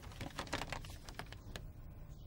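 A crumpled sheet of brown paper crinkling as it is unfolded and held open: faint, irregular crackles.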